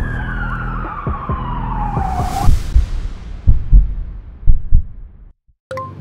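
Montage sound design: a siren-like tone slides steadily down in pitch for about two and a half seconds and ends in a whoosh, followed by several deep bass thuds over a low drone. It cuts out abruptly shortly before the end.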